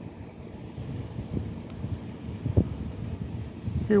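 Wind buffeting an outdoor microphone, a steady low rumble with a couple of soft knocks.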